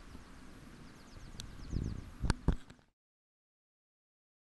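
Faint open-air ambience with a soft, rapid, evenly repeating chirping, then a low rumble and two sharp knocks of the camera being handled a little after two seconds in; the sound then cuts off to silence.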